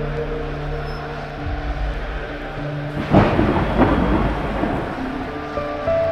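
Rain-like hiss with a sudden thunderclap about three seconds in that rumbles away, laid over a held ambient synth pad; the music's tones come back in near the end.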